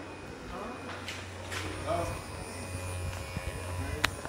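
Handheld electric massager running with a steady low buzzing hum, louder near the end.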